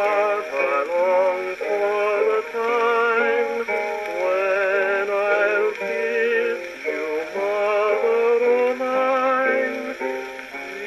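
A 1928 Imperial 78 rpm shellac record of Hawaiian music playing on a Columbia 204 acoustic gramophone: a male voice singing with wide vibrato over plucked string accompaniment. The sound is thin, with no bass.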